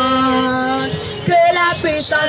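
A girl singing a worship song into a handheld microphone, with long held notes.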